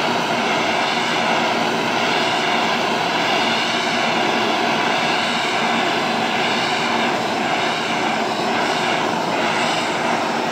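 Handheld gas torch burning steadily with a continuous roar as its flame scorches pine boards. Its tone wavers slightly as the torch is swept back and forth.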